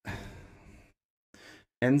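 A man sighing into a close microphone: one breathy exhale lasting just under a second and fading out. Speech starts again near the end.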